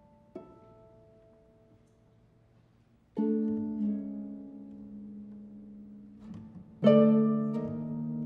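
Solo concert harp playing a slow, sparse passage: a soft single plucked note, then about three seconds in a loud chord left to ring, and another loud chord near the end that rings on.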